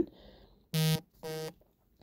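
Mobile phone vibrating: two short buzzes about a second in, the second shorter and quieter.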